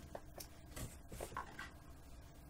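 Faint handling sounds: a few soft knocks and rustles as dolls are set down.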